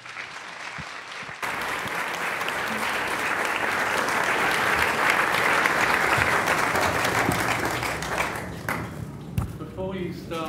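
An audience applauding a welcome. The clapping grows suddenly louder about a second and a half in, holds steady, then dies away near the end.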